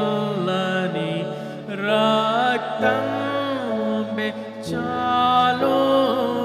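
A man singing a slow Telugu hymn, holding long wavering notes, over sustained accompaniment chords that change about three seconds in and again near the end.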